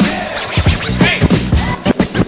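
Hip hop music with turntable scratching: quick back-and-forth scratches of a record over the track.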